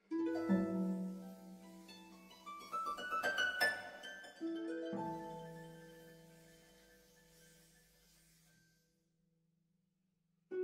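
A quartet of prepared harps, with paper woven through the strings and coils wrapped around some of them, playing plucked notes. About three seconds in comes a quick rising run of notes, and about five seconds in a low chord rings and slowly dies away.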